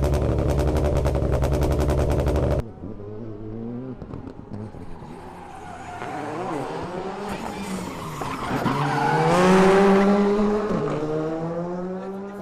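A rally car's engine running close by with a rapid, loud pulsing, cut off suddenly about two and a half seconds in. After that, a rally car's engine on the circuit revs up and down through the gears, loudest a little before the end, with a drop in pitch at a gear change.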